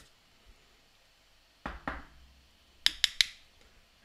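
Quiet after the sanding stops, then a soft knock about halfway through and three quick, sharp clicks near the end as the wooden-backed sanding pad and pencil are handled.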